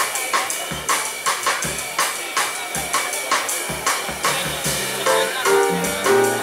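A live band's drum kit plays a steady funk groove of kick drum, snare and cymbals. A pitched melody line from the band joins about five seconds in.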